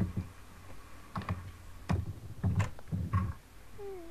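Computer keyboard being typed on: a handful of irregular keystrokes and knocks with a dull thud to them.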